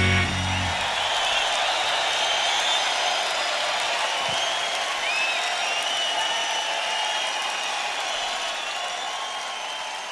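The band's final chord cuts off just under a second in, leaving a large arena crowd cheering and applauding, with scattered whistles. The cheering fades slowly toward the end.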